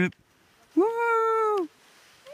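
A single drawn-out, high, meow-like cry about a second long, starting just under a second in, holding one pitch before dropping away at the end.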